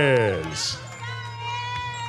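A boxing ring announcer holds the last syllable of the winner's name in a long, drawn-out call. It falls steadily in pitch and ends in a short hiss about half a second in. Arena music follows, a steady held tone over a low hum.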